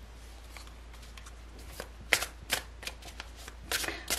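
A deck of tarot cards being shuffled by hand. It is faint at first, then turns into a run of sharp card flicks and slaps in the second half.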